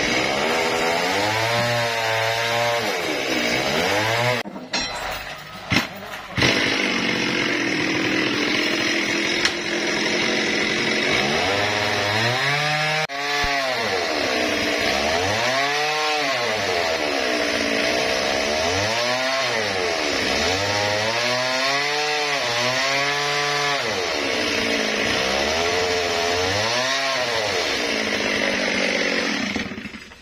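Two-stroke chainsaw cutting into a trembesi (rain tree) log, its engine speed rising and falling over and over. The sound drops away briefly about five seconds in, and again near the end.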